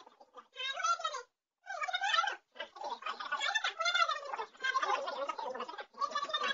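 A person whining and whimpering without words, high-pitched with a wavering pitch, in long unbroken stretches after a short first cry.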